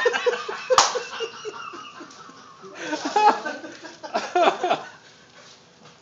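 Men laughing, with a quick run of 'ha-ha' pulses over the first two seconds and two more bursts of laughter later. A single sharp smack sounds about a second in.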